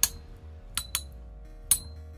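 Two metal-wheeled Beyblade tops spinning in a clear plastic stadium, clashing with four sharp, ringing clinks: one at the start, two close together a little under a second in, and one near the end.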